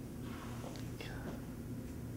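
A quiet room with a steady low hum and a faint whisper about a second in.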